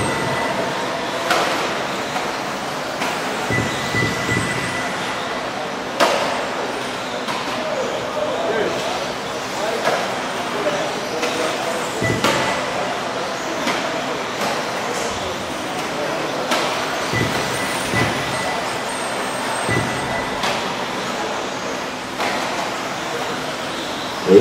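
Radio-controlled 4WD off-road buggies racing on a dirt track, a thin steady motor whine coming and going, with a few sharp knocks from cars landing or striking the track borders. Background voices from the crowd are mixed in.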